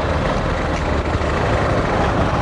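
A motor vehicle engine idling close by, a steady low rumble.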